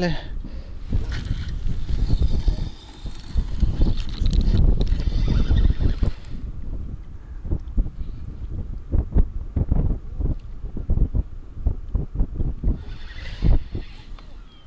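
Wind gusting and buffeting on the microphone as a feeder rod is cast out, with a brief swish about a second in.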